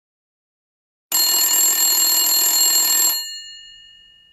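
An electric bell rings steadily for about two seconds, starting about a second in, then stops abruptly and its ringing tones die away.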